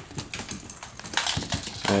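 Scattered light clicks and scuffles of Cavapoo puppies playing on a tile floor, their claws tapping and scrabbling on the tiles.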